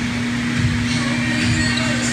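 A steady low hum, holding one pitch, over a rumbling background noise.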